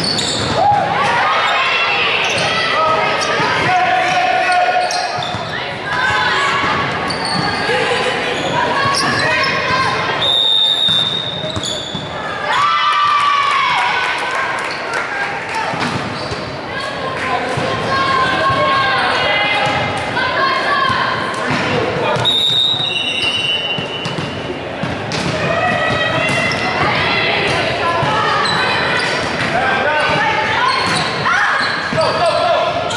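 Indoor volleyball match in an echoing gymnasium: players calling and shouting to each other, with the sharp smacks of the ball being struck and hitting the floor. Twice, about twelve seconds apart, comes a short high steady tone like a referee's whistle.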